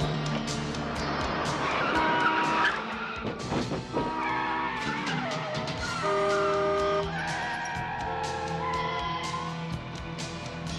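Car tyres squealing as cars brake hard for a pedestrian running across the road, about two seconds in and again around five seconds. A TV score with held notes and a steady beat plays throughout.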